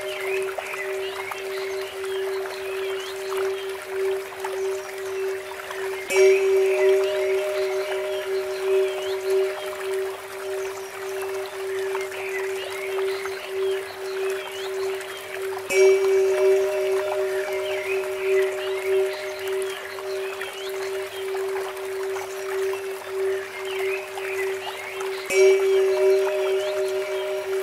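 Tibetan temple bell struck three times, about ten seconds apart, each strike ringing out and fading over a steady sustained tone. Small birds chirp throughout, over the trickle of water from a bamboo fountain.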